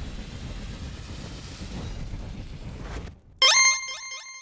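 Sound effects for an animated logo reveal. A low rumbling noise slowly fades and drops out about three seconds in, then a sudden bright ringing hit with several tones sounds about half a second later and starts to die away.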